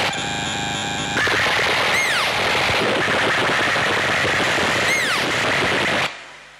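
Electronic noise from a patched Ciat-Lonbarde and modular synthesizer rig: a dense, rapid rattling texture that pulses quickly for the first second, with short falling chirps about two and five seconds in. It cuts off sharply at the end.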